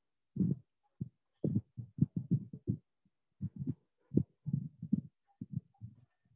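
Pen or stylus tapping on a writing tablet during handwriting: an irregular run of short, soft, low knocks, with a brief pause about halfway through.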